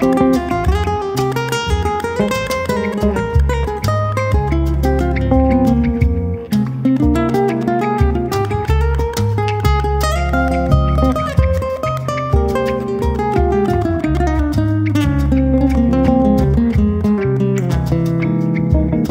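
Live latin jazz band playing, with plucked guitar carrying the melodic lines over a steady low bass line and hand percussion; the trumpet is not playing.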